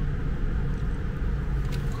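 Steady low background rumble with no distinct source, and a faint click near the end.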